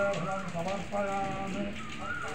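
A voice in slow, held tones, with a steady crackling noise underneath.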